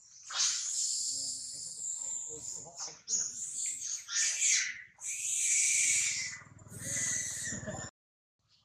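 Monkeys giving high-pitched screaming cries, four long calls one after another, cut off suddenly near the end.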